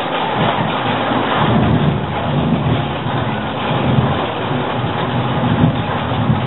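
Sound effects playing in a theme-park ride tunnel: a steady loud noise with a low rumble that swells and fades every second or two.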